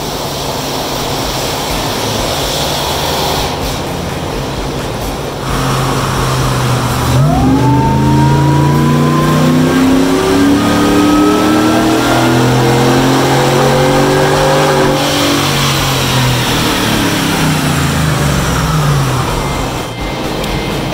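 Callaway-supercharged V8 of a GMC Yukon Denali making a wide-open-throttle pull on a chassis dyno. It runs steadily at first, then climbs in revs for about eight seconds with a whine rising alongside. Near the end it lets off and winds down.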